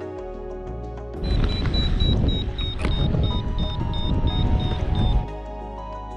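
Background music, with about four seconds of loud wind rumble on the microphone starting about a second in, carrying a paragliding variometer's rapid high-pitched beeping, its signal of climbing in lift; the rumble and beeps cut off suddenly.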